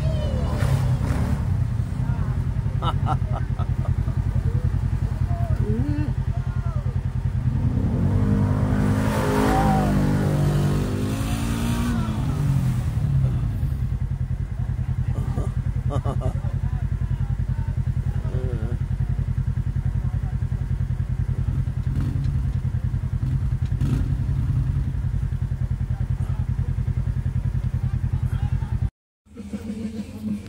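Side-by-side UTV engine running steadily under load as it climbs a dirt hill, revving up and back down about nine seconds in.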